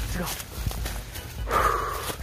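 Dry reed stalks rustling and crackling as someone pushes through a dense reed thicket, with footsteps on dry litter and scattered clicks. A steady low rumble of wind or handling noise sits under it, and a louder rush of rustling comes near the end.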